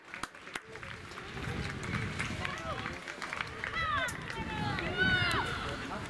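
High-pitched shouts from players on a football pitch, with two loud calls about four and five seconds in, over open-air background noise with scattered sharp clicks.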